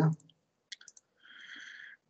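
A few quiet computer mouse clicks, then a short, steady, high electronic tone lasting under a second.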